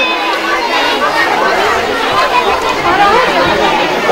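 Several people talking over one another: overlapping chatter with no single clear voice.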